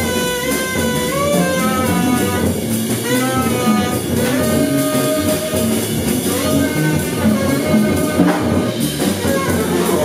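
Live jazz trio of saxophone, double bass and drum kit playing together, the saxophone in short phrases that bend in pitch over busy drums and bass.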